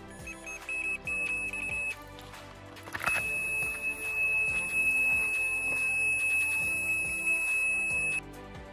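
Electronic carp bite alarm on a rod pod: a run of short, quick high beeps, then a short knock, then one unbroken high tone held for about five seconds as the line is pulled off fast. This is a run, with a carp taking line.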